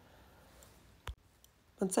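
Faint rustle of paper being torn by hand, with one sharp click about a second in, then a woman starts speaking near the end.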